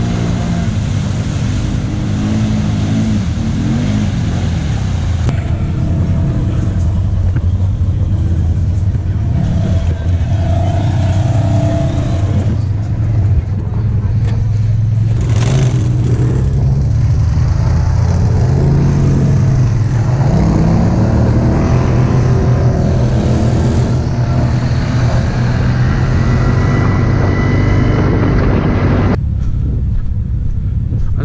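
ATV and side-by-side engines running, their revs rising and falling, with a brief knock about halfway through.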